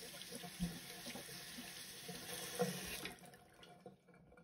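Tap water running faintly into a ceramic bathroom sink as a comb is rinsed under it. The water sound fades out about three seconds in.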